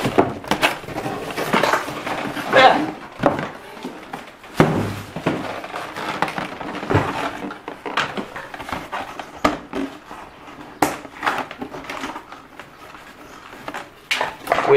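Packaging being handled in a large cardboard box: scattered knocks, rustles and clicks as parts and wrapping are moved about.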